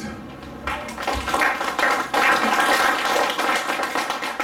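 Audience applauding, beginning under a second in and keeping up at a steady level.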